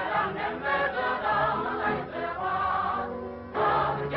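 Music: a choir singing held notes, with a short lull about three seconds in.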